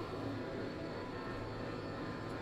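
Steady low background hum and noise, with no distinct event.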